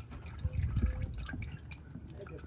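Engine oil dripping into a drain pan from the oil filter canister housing as the plastic drain fitting is pushed into it, with a few light bumps of handling about half a second to a second in.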